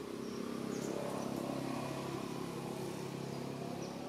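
A motor engine hums steadily at one even pitch. A few short, high chirps, as of a small bird, come about a second in and again near the end.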